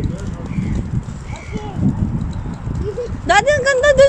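Irregular low rumbling and knocking of a kick scooter's small wheels rolling over brick paving. About three seconds in, a high, wavering voice-like call rises and is held for about a second, the loudest sound here.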